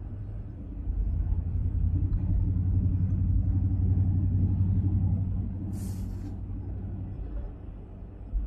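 Car driving at road speed, heard from inside the cabin: a steady low engine and road drone that swells over the first few seconds and eases off after about five seconds.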